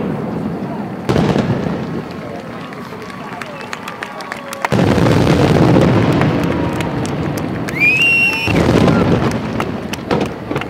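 Aerial firework shells bursting: deep booms about a second in and again near five seconds, with rolling rumble and scattered crackling reports between. Near eight seconds a short high whistle sounds, followed at once by another loud burst.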